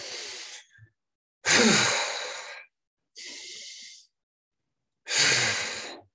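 Deep, audible breathing through the mouth, done twice: a quieter inhale, then a much louder exhaling sigh. The first sigh is slightly voiced and falls in pitch.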